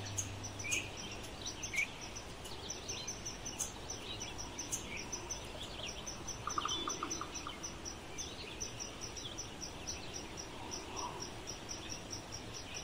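Insects chirping in a steady high pulse, about four a second, with scattered short bird chirps and a brief rapid trill about halfway through.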